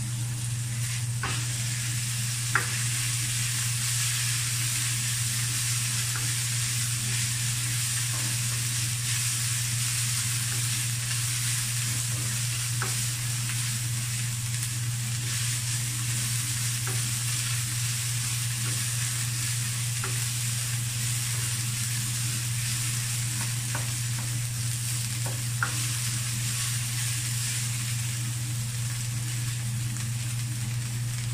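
Ground pork sizzling steadily as it fries in a nonstick wok and is stirred with a spatula. A steady low hum runs underneath, and two sharp taps stand out, one near the start and one near the end.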